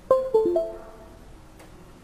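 Computer notification chime: three quick descending plucked-sounding notes that ring out within about a second. It sounds as the PC detects the phone on USB in BROM mode.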